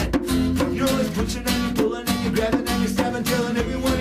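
Acoustic guitar strummed in a steady rhythm, with a man singing lead vocals over it in a live acoustic rock song.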